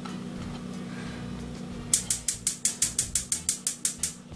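A rapid, evenly spaced run of sharp mechanical clicks, about seven a second, starting about halfway through, over a low steady hum.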